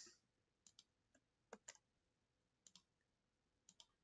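Faint clicks of a computer mouse, in quick pairs about once a second, against near silence.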